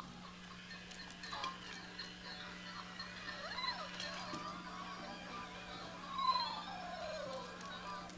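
Twirlywoos Peekaboo spinning soft toy playing its faint electronic tune and funny sound effects while it spins, with sliding whistle-like glides: one rising and falling about three and a half seconds in, and a longer falling one about six seconds in.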